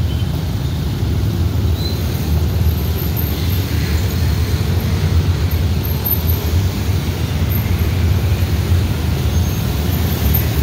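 Dense motorcycle and scooter traffic moving across together, a steady rumble of many small engines.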